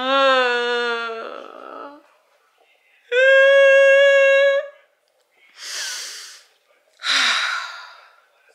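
A woman mock-crying without words: a whimper that sags in pitch and trails off into breath, then a higher, steady wail held for about a second and a half, followed by two sharp breaths.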